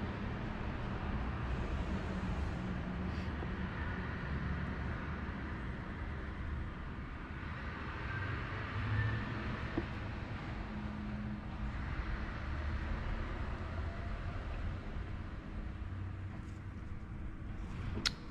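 Steady low background rumble with a faint hiss and no distinct events.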